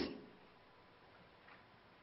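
Near silence: quiet room tone in a lecture hall, with one faint click about a second and a half in.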